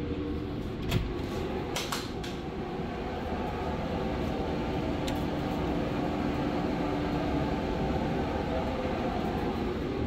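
Twin-bag workshop dust collector running: a steady motor and fan hum with a held low tone. A couple of sharp knocks come in the first two seconds.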